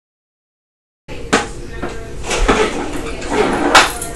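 About a second of silence, then room sound with several sharp plastic knocks and clacks from a foosball game being played.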